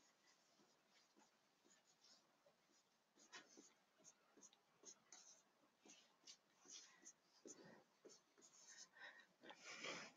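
Near silence, with faint scattered taps and short scratches of a stylus writing numbers on a digital whiteboard.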